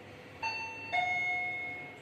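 Fujitec elevator chime ringing two falling notes: a higher tone about half a second in, then a lower one that rings on for about a second and fades.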